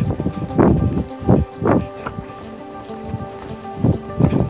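A steady droning tone at several pitches, overlaid by irregular bursts of rustling noise, several in the first two seconds and another just before the end.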